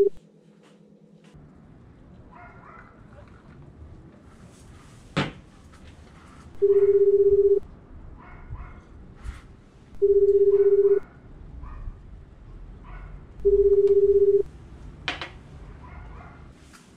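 Telephone ringback tone: a steady single-pitched beep about a second long, sounding three times a few seconds apart while the call waits to be answered. Two sharp clicks, one about five seconds in and one near the end.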